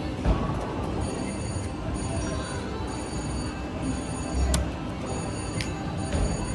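VGT Mr. Money Bags 2 reel slot machine paying out a win: electronic ringing as the credit meter counts up. The ringing runs over casino floor noise and music. There is a sharp click about a third of a second in.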